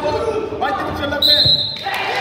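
Referee's whistle, one short shrill blast, marking the fall as the pin is called, with a thud on the wrestling mat just under it.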